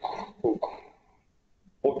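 A man coughs or clears his throat twice in quick succession, short and sharp, then falls quiet.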